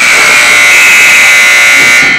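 Ice hockey arena's electric buzzer sounding one loud, steady tone that starts suddenly and cuts off after about two seconds.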